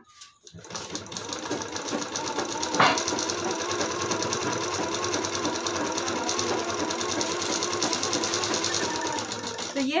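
Usha sewing machine stitching a seam steadily at speed. It starts up about half a second in and runs until just before the end, with one sharp click about three seconds in.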